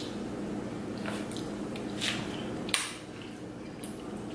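Faint, wet squishing and chewing of a mouthful of seafood-boil food, with a few soft smacks and a short click, over a low steady hum.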